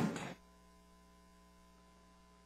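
Room sound cuts off abruptly about a third of a second in, leaving a faint, steady electrical mains hum on the audio feed.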